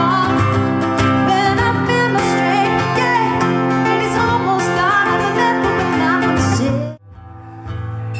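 Live female vocal over amplified guitar: she sings a melody line while the guitar strums chords. About seven seconds in the music cuts off abruptly, and a quieter guitar passage begins.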